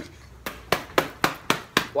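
A quick, even run of about six sharp slaps or knocks, roughly four a second, starting about half a second in.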